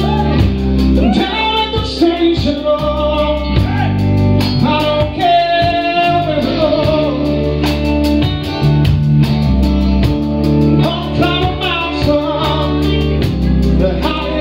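Live rock band playing a Southern rock song: electric guitar and electric bass over drums, with singing.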